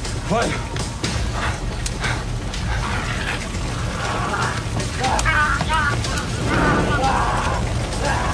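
TV action-scene soundtrack: background music with a steady low drone under characters' calls and short exclamations, with scattered sharp knocks.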